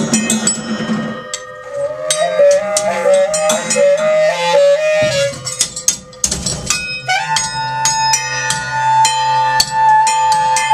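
Free-improvised alto saxophone and drum kit: the saxophone plays a short run of notes stepping up and down, then about seven seconds in holds one long steady note, over scattered cymbal and percussion hits.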